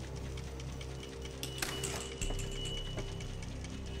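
Small balls dropping through a clear plastic pegboard tower, a scatter of light irregular ticks starting about a second and a half in, over a steady low hum with a faint high whine.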